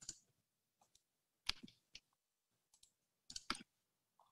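Faint, sharp computer mouse clicks, scattered one at a time, with a quick cluster about three and a half seconds in, as a screen share is being set up over a video call.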